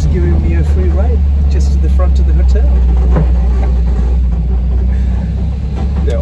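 Steady low engine and road rumble heard from inside a moving vehicle's cabin, with brief voices near the start.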